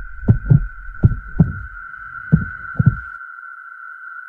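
Heartbeat sound effect: three low double beats, spaced further apart each time and stopping about three seconds in, over a steady high-pitched electronic tone like a heart monitor's flatline.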